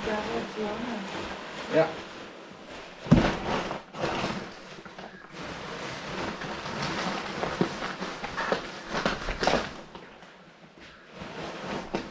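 Rustling and crinkling of a large grey nylon bag being rolled up and handled, a sound the man himself calls too much noise, with a single loud thump about three seconds in.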